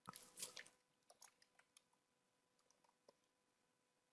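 Very quiet room tone with a faint steady hum, broken at the start by a short noisy rustle lasting under a second, then a few scattered faint clicks.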